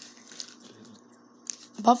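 Quiet room tone with a faint steady hum, a few soft mouth noises and a short click about a second and a half in, just before speech begins.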